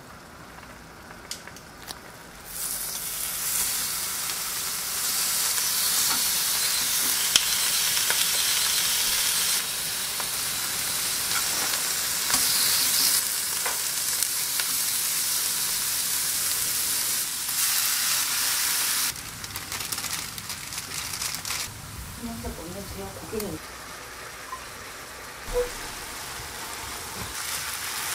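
Thin slices of hanwoo striploin beef sizzling in a hot frying pan. The loud sizzle starts suddenly a couple of seconds in and drops to a softer frying sound about two-thirds of the way through.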